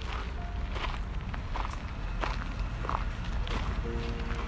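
Footsteps crunching on a gravel path at an even walking pace, about one step every 0.7 seconds, over a steady low rumble.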